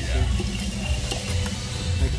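Restaurant background noise: a steady din of background music and distant chatter, with a light click a little over a second in.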